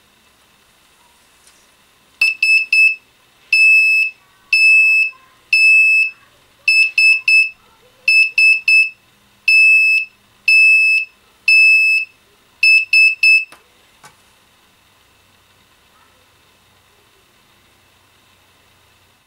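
Small breadboard buzzer driven by an Arduino, sounding SOS in Morse code twice: three short high-pitched beeps, three long beeps, three short beeps, then the same again. A click of the push switch comes just as the beeping starts and again as it stops.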